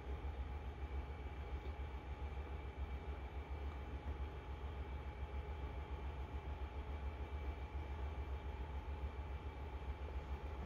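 Room tone: a steady low hum with faint background hiss and no distinct events.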